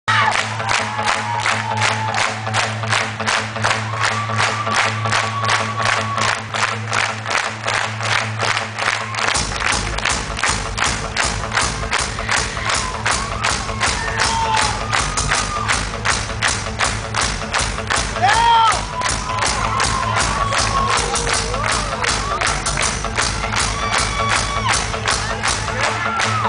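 Post-hardcore band playing live through a club PA, recorded from within the crowd: a steady beat about three times a second over a held low note, with the full band's heavy low end coming in about nine seconds in. The crowd shouts and cheers along.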